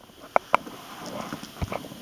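Center console lid of a 2012 Infiniti G37x being unlatched and opened by hand: two sharp clicks about half a second in, faint rustling, then a soft thump as the lid opens.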